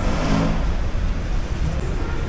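Steady low rumble of a busy indoor shopping arcade's background noise, with a brief louder swell about a quarter second in.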